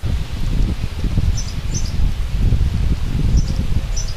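Wind rumbling on the microphone outdoors, with short, high bird chirps in pairs about a second and a half in and again near the end.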